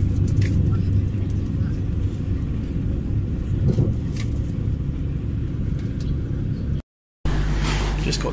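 Steady low rumble of a moving train heard from inside the carriage, with a few faint clicks. It stops abruptly about seven seconds in.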